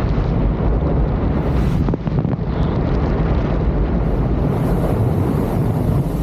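Loud, steady wind rush buffeting a skydiver's camera microphone in freefall, deep and rumbling.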